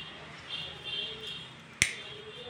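Quiet room sound with a single sharp click near the end.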